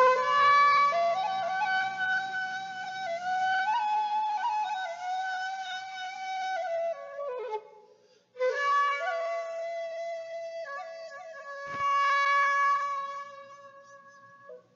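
Solo Japanese bamboo flute playing the introduction to a folk sawyer's work song: two long, ornamented melodic phrases with a short breath break about eight seconds in. The second phrase fades near the end. The sound is played back from cassette tape, with a faint low hum at the start.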